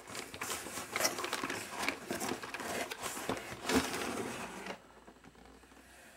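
Cardboard rustling and scraping as a boxed product is slid and lifted out of a cardboard shipping carton by hand, with irregular small knocks and crinkles; it stops about a second before the end.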